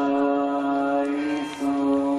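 Devotional chanting: voices holding one long, steady note at a fixed pitch. The note breaks briefly about a second and a half in, then the same note picks up again.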